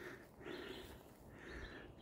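Faint woodland ambience with distant birds calling over a quiet, steady background.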